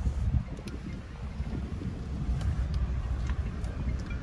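Uneven low rumble of wind buffeting the microphone, with a few faint clicks.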